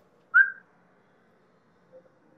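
A person whistling: one short note sliding upward about half a second in, then quiet.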